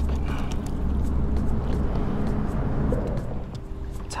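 Steady low rumble of vehicle traffic on the causeway bridge overhead, with a few faint ticks.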